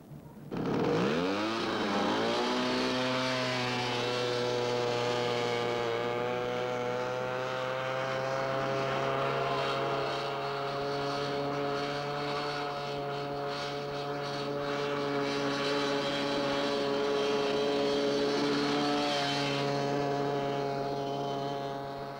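Go-kart engine revving up about half a second in, then running on at a steady high pitch with small rises and dips until just before the end.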